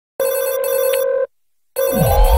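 Telephone ringing tone opening a sped-up pop song: one steady electronic ring about a second long, a half-second pause, then the next ring starting near the end.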